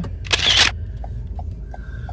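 A short, loud hiss of noise lasting under half a second, followed by a few faint light ticks, over a steady low hum inside a car's cabin.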